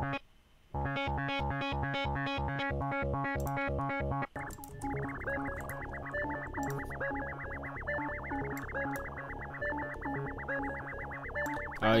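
Synth melody from FL Studio's stock PoiZone synthesizer playing back a looped pattern of short, pulsing chord notes, starting just under a second in. About four seconds later it switches to a darker sound that repeats faster.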